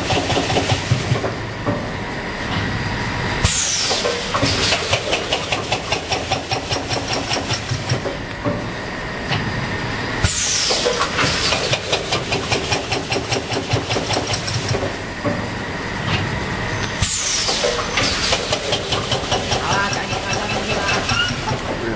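Tobacco packing machine running, with rapid steady mechanical clicking. Three times, about seven seconds apart, comes a burst of hiss with a falling high whine.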